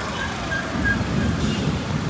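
Uneven low rumble of street noise on a rain-wet road, with a few short, faint high tones.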